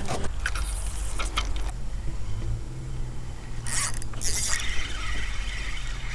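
Spinning reel being handled and cranked on a fishing rod: mechanical clicks in the first second or two, then two short hissing bursts near the middle.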